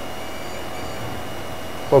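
Steady, even hiss of background noise with a few faint high steady tones; a man's voice starts right at the end.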